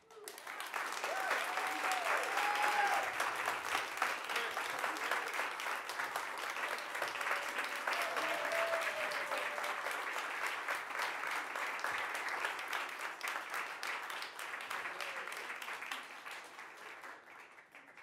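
An audience applauding in a hall. The clapping starts at once after the performance ends, with a few voices calling out over it near the start and about halfway, and it dies away near the end.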